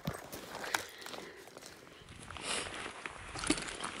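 Faint rustling with a few sharp clicks and cracks, the sharpest right at the start, from movement and handling on dry beaver-dam sticks.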